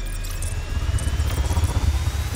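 Sound-design build-up for a TV channel logo animation: a deep rumble swelling and pulsing louder from about half a second in, under a thin whine rising slowly in pitch.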